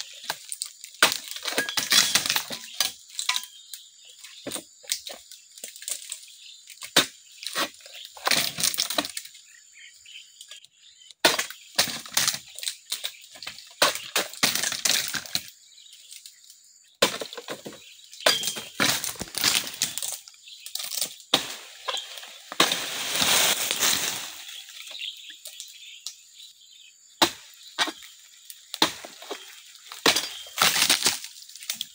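Oil palm harvesting chisel (dodos) on a long pole being jabbed into the tough frond bases of an oil palm: irregular chopping and cracking strikes. Between them come longer rustling, crashing stretches as cut fronds tear loose and fall.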